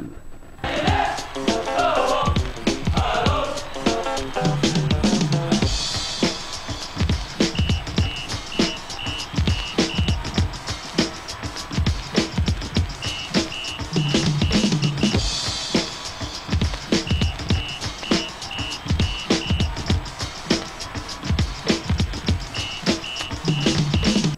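Music with a steady beat and vocals, played from a vinyl picture-disc single on an Ion USB turntable through its ceramic cartridge and the turntable's own built-in preamp. Runs of short high beeps recur through the track.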